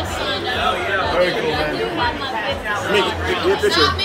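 Several people talking at once in a crowded room, their voices overlapping into chatter.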